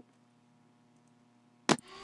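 Near silence: faint steady room hum between a man's words, with a short burst of his voice just before the end.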